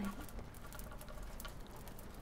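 Faint, scattered light taps and scratches of fingertips on a tabletop. The tail of a woman's voice is heard at the very start.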